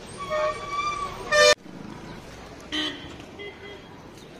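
Vehicle horns honking in street traffic. A loud short toot about a second and a half in cuts off abruptly, and a second, shorter toot comes near three seconds.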